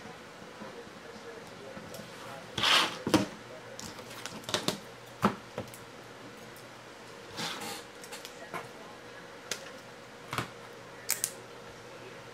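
Scattered sharp clicks and short rustles of trading cards and a hard plastic card holder being handled on a table, the loudest a rustle about three seconds in, over a faint steady hum.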